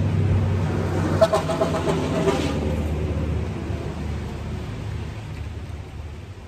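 A motor vehicle's engine running with a steady low hum, fading away over the last few seconds.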